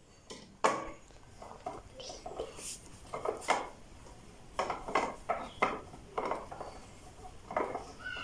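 Irregular wooden knocks and small clicks as a wooden connecting arm is fitted and screwed onto the top piece of a pinewood tensegrity table, with the sharpest knock just under a second in.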